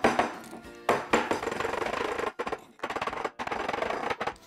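Background music with a few sharp knocks of a small glass jar against a stone countertop: one at the start and two close together about a second in.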